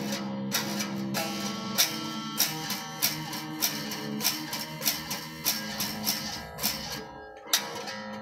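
Electric guitar played with a pick: a run of single picked notes and chords, a new stroke roughly every half second or so, with a short lull near the end before one last strong stroke.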